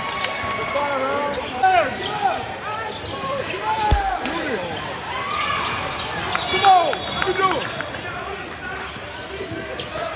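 Basketball game on a hardwood gym floor: sneakers squeaking in short squeals, a basketball bouncing, and a few sharp knocks. Voices in the hall carry underneath.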